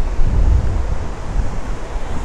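Wind buffeting the microphone outdoors: a gusty low rumble that rises and falls over a steady rushing noise.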